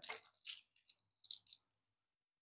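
A few faint clicks and rattles of a small plastic solar flower toy being handled and set down on a wooden table, ending after about a second and a half.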